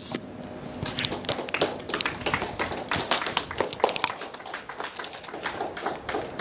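A quick, irregular run of light taps and clicks, several a second: handling noise and movement from a person close to the microphone.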